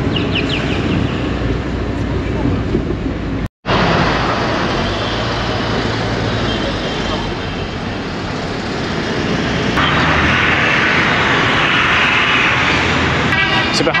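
City street traffic heard from inside a moving car: engine and road noise with car horns tooting. The sound cuts out completely for a moment about three and a half seconds in.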